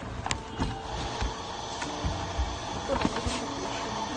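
Handling noise: scattered light clicks and rustling as small gift items and packaging are handled in the hands.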